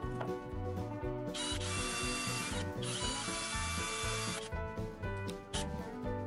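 Cordless drill running under load as it bores into a pine frame, in two runs with a short break between, about a second and a half in, then a brief extra burst near the end. Background music with a steady beat plays throughout.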